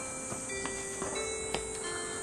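Soft background score: held synth-like tones that step to new notes a couple of times, with a few light ticks.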